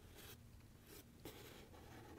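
Near silence with a few faint, brief rustles and scrapes of hands handling a USB cable and an Arduino board on a tabletop.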